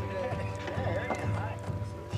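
Several men's voices talking over each other in casual chatter, with a steady low hum underneath.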